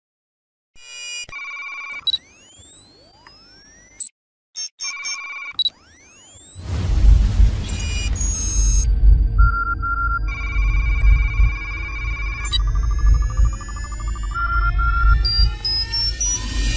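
Electronic music and synthesized sound effects for an animated logo sequence. It opens with beeps and rising sweeping tones, then a heavy deep bass rumble comes in under the music about six and a half seconds in.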